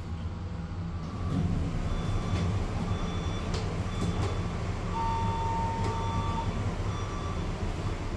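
Electronic beeping about once a second, with one longer, lower beep about five seconds in, over a steady low rumble.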